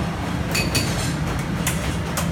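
Busy commercial kitchen with a steady low roar from the stoves and their extraction. A few sharp metallic clinks of pots and utensils come about half a second in and again near the end.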